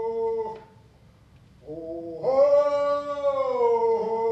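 A man chanting in long, steady held notes. The note breaks off about half a second in, and after a pause of about a second a lower note returns, slides up and holds, then eases back down near the end.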